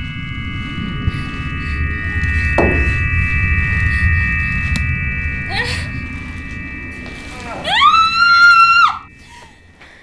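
Horror film soundtrack: a sustained high droning chord over a low rumble, with a falling swoosh about two and a half seconds in. Near the end a high scream rises and is held for about a second, then cuts off abruptly.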